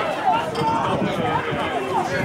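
Rugby players shouting calls over one another on the pitch, with dull thumps of feet and bodies as a lineout turns into a maul.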